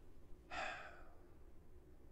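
A man's single short audible breath, like a sigh, about half a second in, over quiet room tone.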